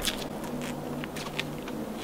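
Quiet scattered clicks and rustles from a tree climber's gear and clothing as he stands on his climbing spurs, over a faint steady low hum.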